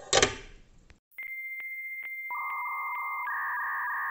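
Soldering iron dropped into its metal coil stand with a brief clatter. About a second later, electronic beep tones start with a steady ticking pulse: one high tone, joined by a lower one midway, the high tone stepping down near the end.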